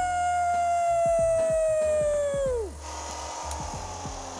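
A man's voice holding a long, high "Woooooo!" for nearly three seconds, its pitch slowly sinking and then dropping away. Under it runs the low hum of a Bridgeport milling machine, and a steady hiss of the cutter in aluminium comes up as the shout ends.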